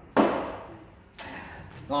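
A glass beer bottle set down on a wooden table with a sharp knock, followed about a second later by a second, weaker sudden sound.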